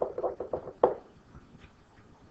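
A stylus tapping and knocking on a pen tablet in a quick run of short taps while a word is handwritten. The loudest tap comes a little under a second in, then the tapping stops.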